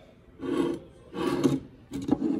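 A heavy ceramic planter shaped like a turtle shell scraped across a table top, twice, in two short rasping strokes.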